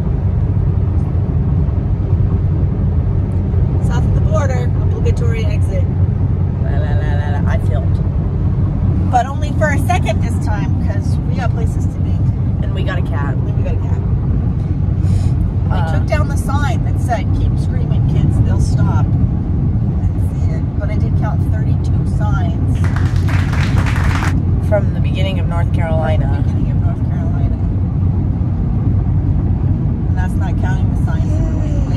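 Steady road and engine noise inside a moving car's cabin, with intermittent voices. About 23 seconds in there is a short burst of hiss.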